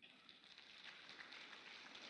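Faint applause from a seated audience: a soft, even patter of many hands clapping that cuts in suddenly and swells slightly.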